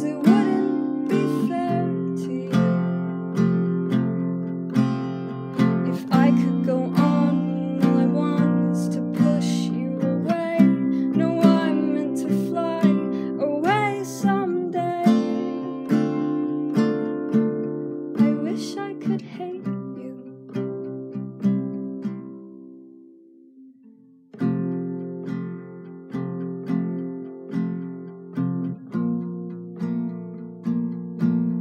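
Acoustic guitar strummed and plucked in a slow song accompaniment. About three-quarters of the way through, the playing dies away almost to silence, then starts again a second later.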